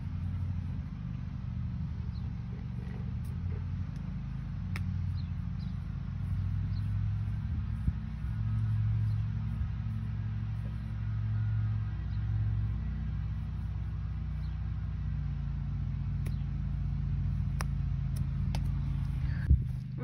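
A steady low rumble that swells and fades in strength, with a few faint sharp ticks and a louder knock near the end.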